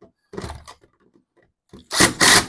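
Cordless drill driving a screw into the fan's mounting ear in short bursts: a brief one about half a second in and a louder one near the end.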